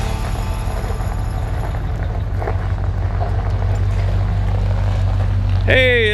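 Low, steady rumble of the 1973 Ford F100's 360 V8 engine running.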